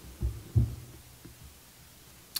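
Two soft, low thumps about a third of a second apart, against faint room tone.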